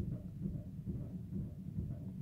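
Quiet room tone: a low, steady background hum with no distinct event.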